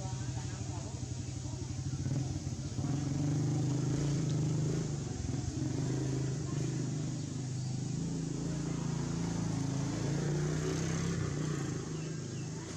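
A motor vehicle engine, most like a motorbike, running steadily nearby, its pitch wavering slightly up and down.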